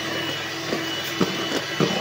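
Electric hand mixer running steadily, its whisk beaters whipping ice-cream batter in a plastic bowl until it fluffs up, with a few light clicks of the beaters against the bowl.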